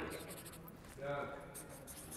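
Felt-tip marker scratching in short strokes as it draws on cloth. A voice is heard briefly about a second in.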